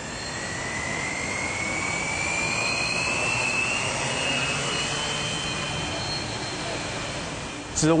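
Multirotor camera drone's electric motors and propellers whirring as it takes off and climbs. The sound is a steady rushing hum that builds over the first few seconds, with a faint whine slowly rising in pitch.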